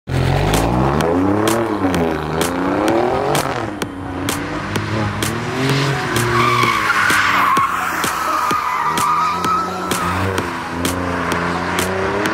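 Alfa Romeo Giulia Quadrifoglio's twin-turbo V6 revving up and down several times as the car is driven hard on a wet track, with tyres squealing in the middle stretch.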